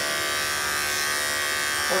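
Corded electric dog grooming clippers running with a steady buzz as they are drawn through a goldendoodle's coat on a second blending pass.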